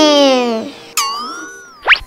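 Cartoon sound effects: a sliding tone that falls in pitch, then a boing about a second in that drops and wobbles, then a quick rising whistle-like sweep near the end.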